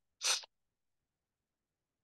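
A single short breathy hiss from a person, like a sharp exhale or a sneeze, lasting about a third of a second, then dead silence.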